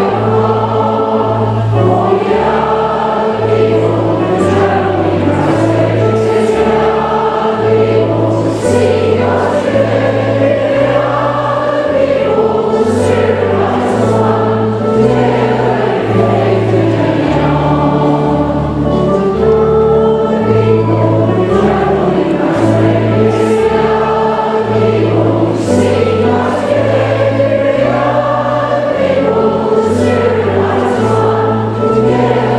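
Congregation singing a song together over instrumental accompaniment, with a bass line stepping from note to note about once a second.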